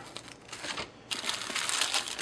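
Clear plastic wrapping crinkling as a plastic-bagged foam stabilizer fin is handled and lifted from a foam packing box, louder from about a second in.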